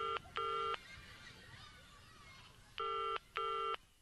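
A telephone ringing in a double-ring cadence: two short electronic rings at the start, a pause, then two more about three seconds in.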